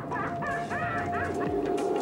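A run of short, honking, bird-like calls in quick succession over a single held tone that leads into music.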